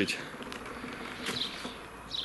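An insect buzzing faintly and steadily against low outdoor background noise.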